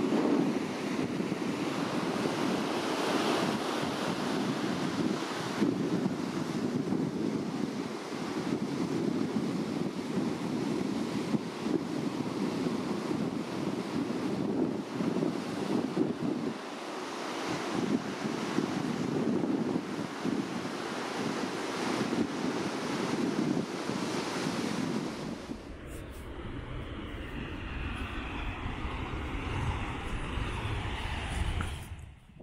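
Ocean surf breaking and washing in a steady rush, with wind buffeting the microphone. Near the end the surf gives way to a low rumble.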